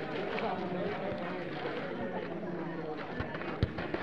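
Players' voices calling across an outdoor football game, with running footsteps on a dirt pitch and two dull thumps a little after three seconds in.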